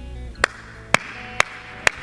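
Hand clapping in a steady beat, about two sharp claps a second, starting about half a second in.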